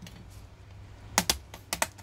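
Sharp plastic clicks from an HP 650 G2 laptop keyboard as it is pressed and pushed free of its retaining clips, in two quick pairs about half a second apart in the second half.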